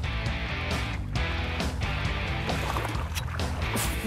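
Background music playing under the broadcast.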